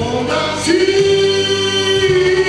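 Male singer's amplified voice singing a French pop ballad over instrumental accompaniment, moving briefly and then holding one long note from about half a second in.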